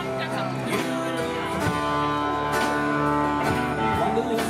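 Live band playing with electric and acoustic guitars over a drum kit, the guitar notes ringing out between regular drum strokes.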